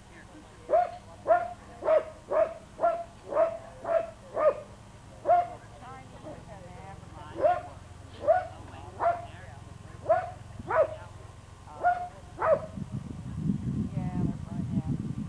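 Kelpie herding dog barking repeatedly in short sharp barks. It barks fast, about two a second, for a few seconds, then the barks come more spaced out. A low rumble rises near the end.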